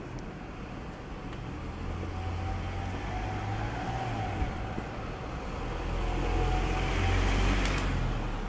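A motor vehicle driving past on the street, a low rumble that grows louder and is loudest near the end.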